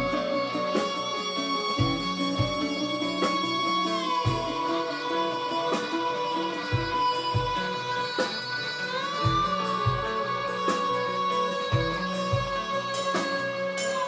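Instrumental progressive rock played live: an electric guitar with a metal slide holds long lead notes that glide smoothly down and later up in pitch. Bass and drums play beneath it, with regular kick-drum hits and cymbal strikes.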